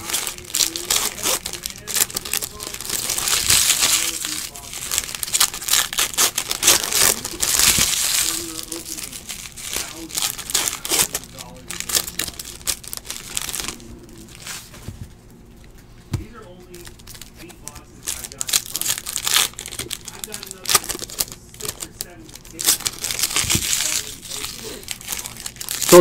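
Foil wrappers of trading-card packs being torn open and crinkled by hand, with the cards inside handled and shuffled, in irregular bursts of crackling. There is a quieter spell a little past the middle.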